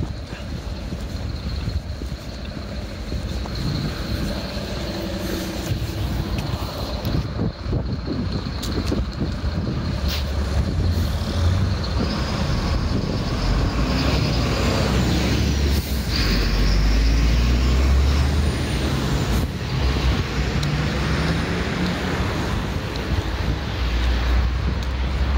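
Street traffic passing close by, with a truck going past: a heavy low engine and tyre rumble that builds to its loudest around the middle and stays strong to the end, with a faint high whine rising and falling over it.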